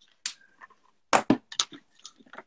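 Sharp clicks and taps of drawing materials being handled on a desk: one click near the start, then a quick run of louder clicks from about a second in.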